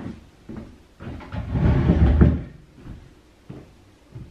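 Hinged wooden closet doors being pulled open, with a few small knocks; the loudest part is a low, noisy stretch about a second long, starting about a second in.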